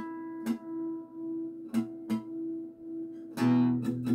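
Acoustic guitar being tuned with harmonics: a chiming harmonic is plucked and rings on at a steady pitch while a few other notes are picked briefly. Near the end a chord is strummed, followed by quick repeated strums.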